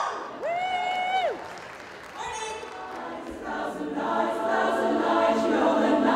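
Women's barbershop chorus singing a cappella in close four-part harmony. One held sung note comes near the start, then from about three seconds in the full chorus holds sustained chords that grow louder.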